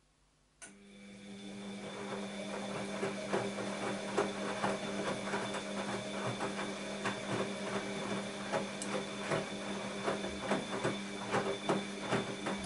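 Bosch WAB28220 washing machine's drum motor starting about half a second in and tumbling the wet laundry: a steady motor hum that builds over the first second or two, with the splashing and irregular knocks of clothes dropping in the drum.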